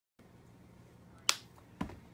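A single sharp click about a second in, followed by a duller thump shortly before the end, over a faint steady low hum.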